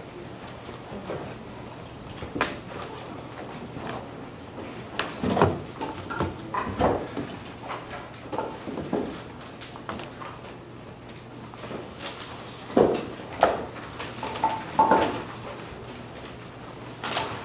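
Scattered knocks, thumps and creaks of a jury coming into a courtroom and taking their seats: chairs, doors and furniture bumping at irregular intervals, with the loudest bumps about five seconds in and about thirteen seconds in.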